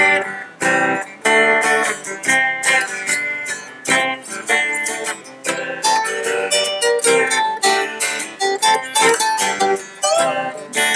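Two guitars jamming together: a lead line picked on a steel-string acoustic guitar over strummed chords, with notes struck several times a second.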